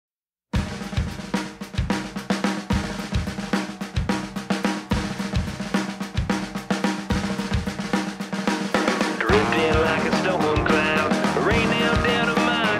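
Intro of a rock song: a drum kit plays a steady beat of kick, snare and cymbals over held low notes, starting half a second in after a moment of silence. About nine seconds in, an electric guitar joins with bending notes and the music gets louder.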